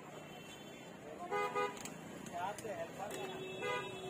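Vehicle horns honking in a busy street, over background voices. There is a short honk about a second in, another near the end, and a steady horn note starting about three seconds in.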